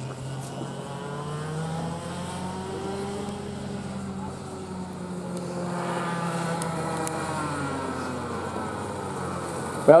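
Two-stroke kart engine running around the circuit, its pitch rising and falling slowly with the throttle through the corners, growing a little louder in the second half as the kart comes toward the microphone.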